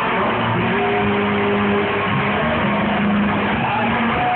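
Live rock band playing loud through a bar PA, a guitar holding long sustained notes.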